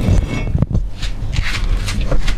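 Handling noise of a large enamel stockpot with a glass lid being lifted off a wood-burning stove top and carried, with a few knocks about half a second in.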